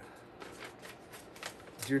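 A sheet of paper rustling as a letter is handled and opened out for reading: a run of short, crisp rustles, about half a dozen in two seconds.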